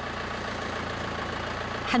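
Farm tractor's engine running steadily while its front loader holds a tow rope on a small pickup truck stuck at the road edge.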